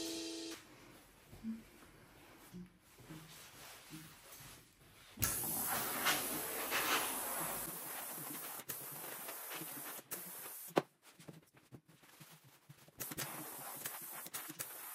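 Ironing with a steam-generator iron: a hiss of steam for a couple of seconds about five seconds in, then scattered clicks and knocks as the iron and the cloth are handled on the ironing board.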